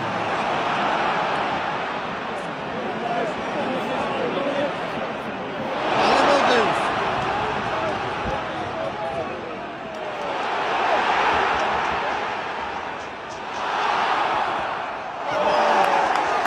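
Football stadium crowd noise, a dense roar of many voices that swells several times as play develops, loudest about six seconds in and again near the end.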